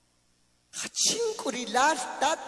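Near silence, then about three quarters of a second in a man's voice amplified through a microphone breaks in with a sharp burst and goes on in loud, emphatic speech.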